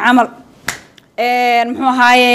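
A woman speaking: a word, then a single sharp click less than a second in, then after a short pause a long vowel held at a steady pitch.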